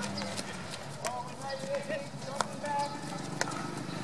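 Field hockey sticks striking balls on artificial turf: several sharp cracks of hits, the loudest about two and a half seconds in, with players' distant shouts and calls between them.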